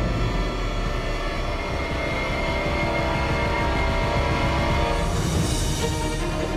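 Tense dramatic background music: held, sustained tones that swell with a rising shimmer near the end.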